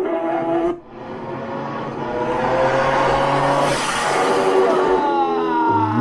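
Racing motorcycle engine at high revs passing at top speed: the note builds to a loud rush about four seconds in, then falls in pitch as the bike goes away.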